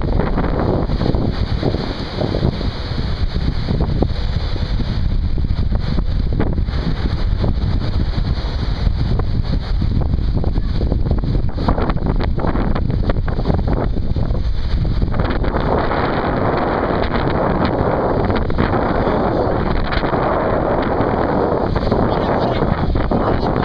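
Wind buffeting the microphone in a steady low rumble, over the wash of ocean surf, which grows louder and brighter about fifteen seconds in.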